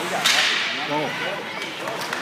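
A single sharp crack of a puck or stick hit from the ice hockey play about a quarter second in, ringing briefly in the rink, with spectators' voices after it.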